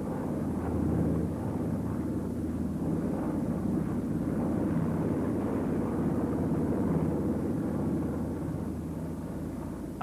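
Piston-engined propeller aircraft droning steadily in a low, even hum, easing off slightly near the end.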